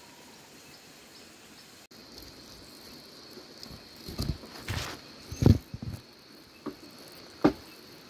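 A steady high-pitched insect trill that starts about two seconds in, over a faint hiss of background. Several sharp clicks and knocks from handling come in the second half, the loudest just past the middle.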